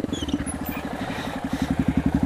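Yamaha XTZ 250 Lander's single-cylinder four-stroke engine running at low revs as the motorcycle is ridden slowly, an even, rapid beat of exhaust pulses.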